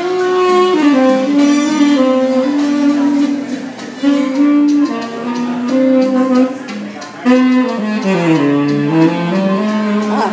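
Tenor saxophone playing a slow melody of held notes, with short breaths between phrases; near the end the line steps down into the low register and climbs back up.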